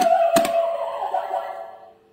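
Toy whack-a-mole game: two plastic hammer strikes on the moles, then the toy's electronic sound effect, a held tone that fades away over about a second and a half.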